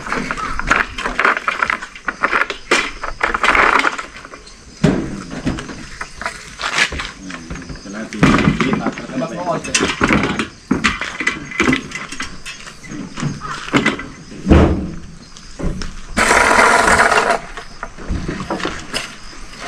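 Repeated knocks, clanks and rattles of moving equipment, wooden dollies and a metal frame, being shifted about on asphalt, with a longer rasping noise near the end.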